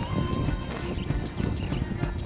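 Background music, with irregular low thumps and rumble underneath.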